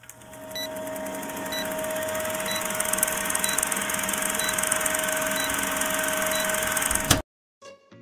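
Vintage film-leader countdown sound effect: a film projector running with a steady whir and rattle, with a short beep about once a second, cutting off abruptly about seven seconds in. Quiet plucked music begins just before the end.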